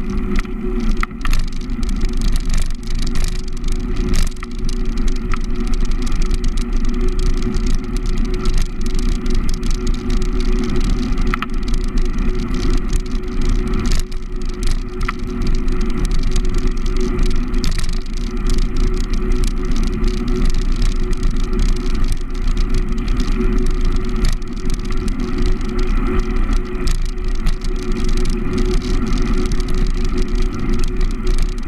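Steady wind and rolling noise on a bicycle-mounted action camera's microphone during a ride, heavy in the low end, with frequent small rattles and ticks from the bike and its mount.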